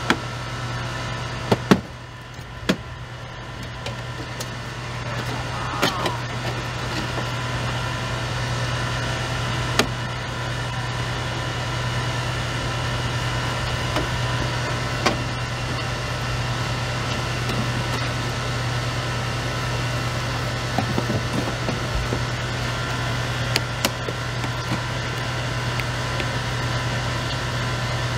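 A small engine running steadily, powering hydraulic rescue tools, with scattered sharp clicks and knocks as the tool works on a wrecked minivan's sliding door.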